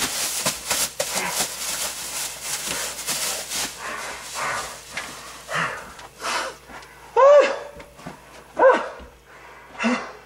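A man breathing hard and gasping for air, out of breath from wearing a bag over his head. Noisy breaths come first, then a few short pitched gasps in the second half.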